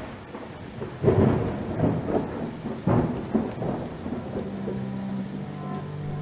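Thunderstorm: steady rain with loud claps and rolls of thunder, the biggest about a second in and near three seconds in.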